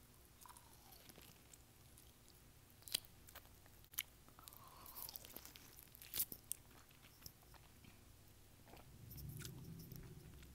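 Faint, close-up sounds of biting into and chewing a peeled orange: sparse wet clicks and smacks of the fruit tearing in the mouth, with a low murmur near the end.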